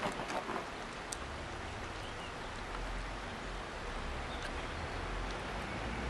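Outdoor background noise: a steady hiss with wind rumbling unevenly on the microphone, and a few faint clicks or scuffs in the first second.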